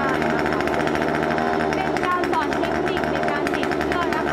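Kanto KT-CS1700 chainsaw's small two-stroke engine running steadily after being started, at a constant speed with no revving.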